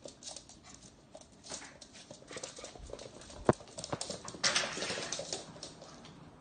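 A puppy's claws clicking and scrabbling on a hard wood-look floor as it chases toys, with a sharp knock about three and a half seconds in and a louder rough scuffle just after.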